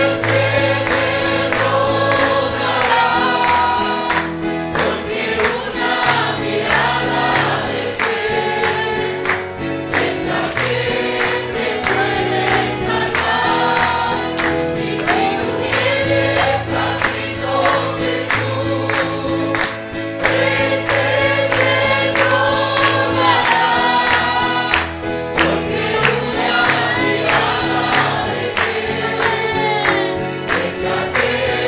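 Congregation singing a worship hymn together, many voices with instrumental accompaniment: sustained bass notes under the melody and a steady beat.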